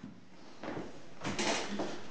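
Low room noise with a few soft knocks and rustles, loudest about one and a half seconds in.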